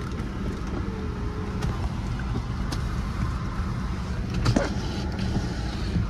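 A 2011 Chevy Equinox's engine running at idle, heard from inside the cabin, with a faint tone about a second in and a click a little after four seconds.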